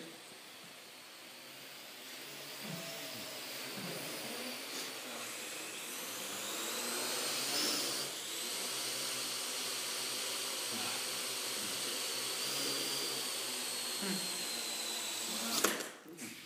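Parrot AR.Drone quadcopter's rotors spinning up about two seconds in and whining steadily in flight, pitch climbing then easing slightly. Near the end a sharp knock as the drone comes down on the floor, and the rotors stop.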